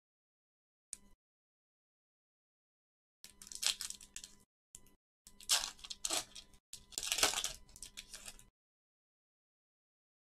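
A foil trading-card pack wrapper being torn open and crinkled by hand, in three bursts of rustling starting about three seconds in.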